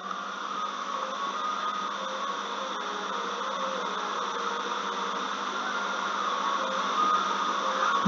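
Steady whirring hiss of background noise, even throughout, with no speech.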